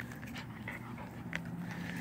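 Small shaggy dog mouthing and tugging at a stick, with a few small clicks of teeth on wood and a soft, low growl in the second half.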